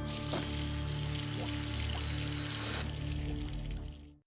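Dramatic background score with sustained low droning tones, overlaid for the first three seconds by a loud rushing hiss. The hiss then drops away and the music fades out at the end.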